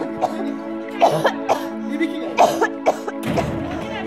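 Background music of sustained low notes, with a person coughing in several short, sharp bursts over it.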